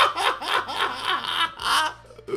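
A man laughing hard: a quick run of short laugh pulses, about five a second, fading off with one last stronger pulse near the end.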